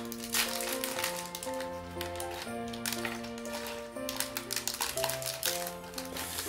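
Background music of slow held notes, with a small clear plastic bag of Lego pieces crinkling as it is torn open and the pieces tipped out.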